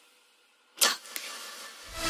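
A sudden whoosh sound effect about a second in, trailing off into a hiss with a short second hit, then a rising swell of noise near the end.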